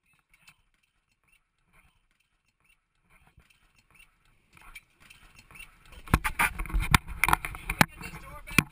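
Commotion inside a small plane's cabin just after an ocean ditching. At first there are only a few faint knocks. From about six seconds in comes a loud jumble of knocks, thuds and handling noise as the camera and passengers move, mixed with voices.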